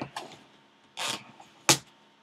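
A short rustle of plastic shrink wrap on a sealed trading-card box, then one sharp snip near the end as scissors cut into the wrap.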